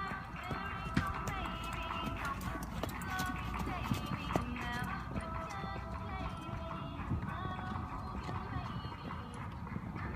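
A horse's hoofbeats as it canters on the sand of a showjumping arena, with music and voices in the background.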